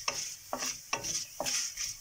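A spoon stirring and scraping chana dal, urad dal, coriander seeds and dried red chillies around a stainless steel pan, in even strokes about two a second, as they fry in a little oil on low flame.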